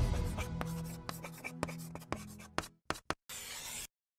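Quick scratching strokes of a pen writing on paper, ending in one longer stroke, over music that fades out.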